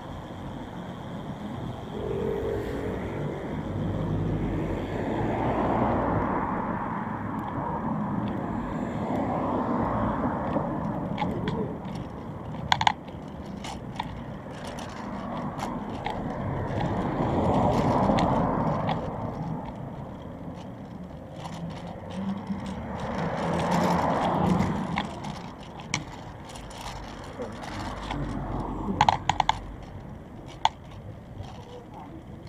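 City street with vehicles passing one after another, each swelling and fading over a few seconds, and a few sharp clicks about halfway and near the end.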